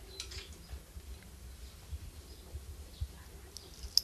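Faint, soft handling sounds of a slotted metal ladle tipping dates into a glass bowl of boiled corn and wheat, with one sharp clink of metal on glass at the very end.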